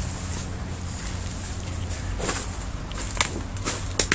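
Footsteps pushing through dry leaves and undergrowth, with a few sharp crackles of snapping twigs or debris in the second half, over a steady low rumble.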